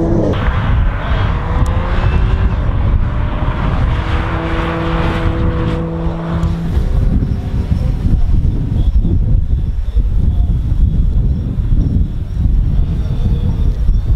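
Audi S4 Avant's supercharged 3.0 V6 accelerating hard from a standing start, its pitch climbing through the gears for the first few seconds, then holding a steady note before fading as the car pulls away into the distance.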